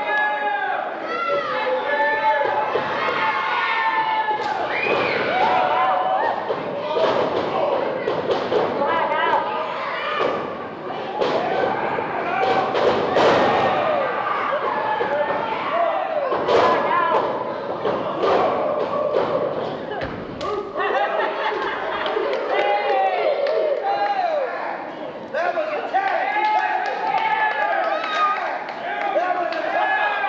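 A pro wrestling match in a large, echoing hall: several sharp thuds and slaps as bodies hit the ring and strikes land, most of them in the middle, under continual shouting voices.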